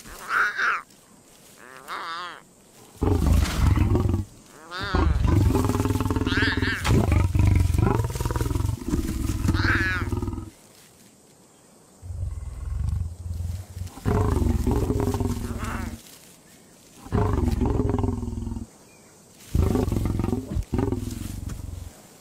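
Adult male lion growling in long, deep, gruff bouts, again and again with short pauses between. Lion cubs give short high-pitched mewing calls, a couple near the start and a couple over the growls.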